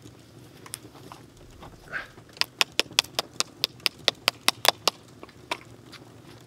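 A quick run of about a dozen sharp taps, about five a second, lasting some two and a half seconds.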